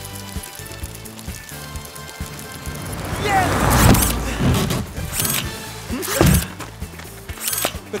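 Cartoon background music, with a rumbling whoosh about halfway through and several short, sharp hits in the second half.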